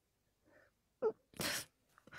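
A person's quiet vocal sound: a short voiced blip about a second in, followed by a brief breathy burst of air, much softer than speech.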